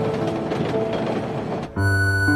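Electric commuter train running along an elevated track, a steady rumbling rail noise mixed with background music. The train noise cuts off suddenly near the end, leaving only the music.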